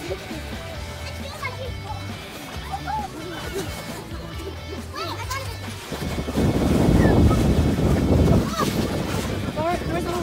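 Background music with children's voices and a laugh, then, about six seconds in, loud splashing for two to three seconds as a child runs through shallow lake water.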